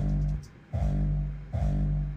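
Distorted hardstyle kick drum playing as a loop, three long pitched booms about three-quarters of a second apart. Its attack transient is muted, so it sounds blurry and has no punch.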